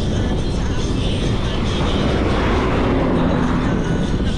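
Wind buffeting on a handlebar-mounted camera's microphone while riding a bicycle at speed, with a passing vehicle swelling in the middle.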